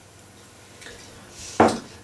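A drinking glass of cider set down on a kitchen counter: one sharp clunk about one and a half seconds in, after a quiet stretch.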